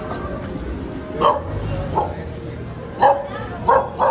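Street dogs barking: about four short, sharp barks spaced roughly a second apart, starting about a second in.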